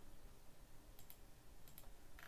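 Near silence with faint clicks: two quick pairs of sharp clicks, one about a second in and one near the end.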